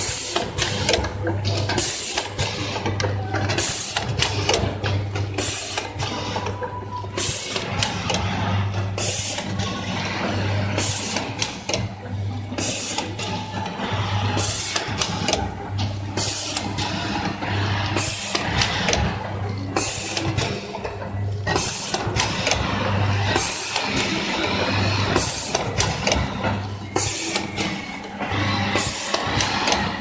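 Triangle sachet packing machine running, cycling about once a second: a short hiss each cycle over a hum that pulses on and off.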